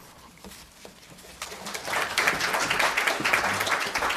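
Audience applauding, starting about a second and a half in and building to a steady patter of many hands.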